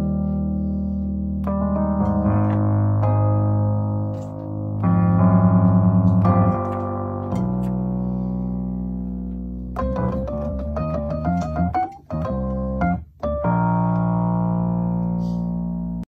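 Rhodes electric piano playing slow, held chords. About ten seconds in it moves into a quicker run of notes, broken by two brief gaps, then ends on a long held chord.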